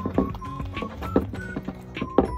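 Toy poodle eating fast from a ceramic bowl: quick, irregular clicks and smacks of its mouth against the food and bowl, over background music carrying a simple melody.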